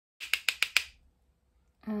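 Four quick, sharp taps in a row, a makeup brush knocked against the loose-powder pot to shake off excess powder before it is applied.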